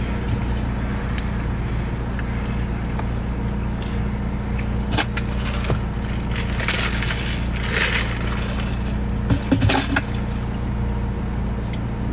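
Steady low hum of a car cabin with the engine running. From about five to eight seconds in come rattling and sipping sounds as an iced drink is drunk from a clear plastic cup.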